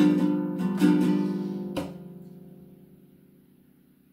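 Ukulele strummed: a chord struck again about a second in, a sharp stroke a little later, then the chord left to ring and die away until it is almost gone.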